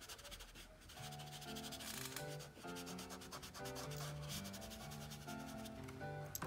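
A fingertip rubbing and blending pastel on paper, a soft dry scratching. From about a second in, quiet background music with slow, sustained melody notes plays along.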